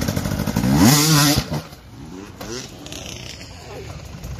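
Enduro dirt bike engine revving hard, rising in pitch for about a second, then dropping away abruptly about a second and a half in.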